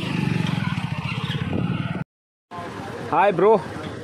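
A motorcycle engine running steadily with a fine, even pulse for about two seconds, cut off abruptly; after a short silence a man gives a couple of brief vocal calls.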